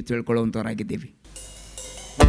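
A man speaking into a microphone for about the first second, then a brief silence and a faint low hum from the sound system.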